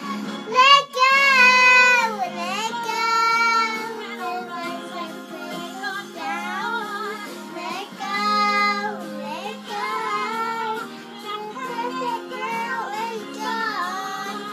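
A young girl singing a song, her voice sliding up and down through held notes, with music underneath.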